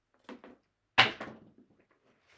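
A pair of dice thrown onto a felt craps table: two light taps, then a sharp knock about a second in with a short rattle as the dice come to rest.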